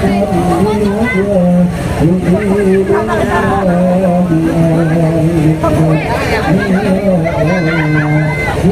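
A loud, amplified male voice singing or chanting in long held notes that step up and down between pitches, over the low rumble of a crowd.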